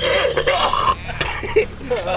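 A man's harsh, breathy vocal outburst lasting about a second, followed by a few short vocal sounds.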